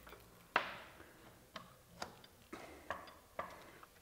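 Light clicks and taps of a metal lighting-frame rod and corner pieces being handled and fitted to a flexible LED panel, about seven separate ticks, the loudest about half a second in.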